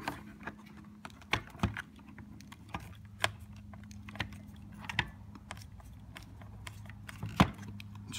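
Scattered small clicks and taps of a Phillips screwdriver tip working a tiny screw out of the plastic instrument-cluster housing and circuit board, the sharpest click near the end, over a faint steady hum.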